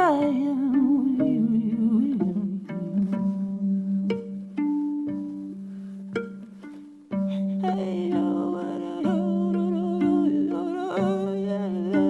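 Viola plucked pizzicato, a slow figure of single notes over a repeated low note, growing quieter for a few seconds. About seven seconds in the playing fills out again and a wordless voice with vibrato comes in over it.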